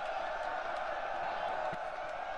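Muffled, steady background of crowd-like voices, with no clear words standing out.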